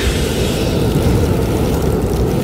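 Loud, steady rushing noise with a deep rumble: a film sound effect of a spaceship capsule's thrusters as it touches down.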